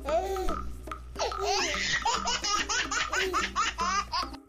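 A baby laughing, breaking into a run of quick giggles about a second in.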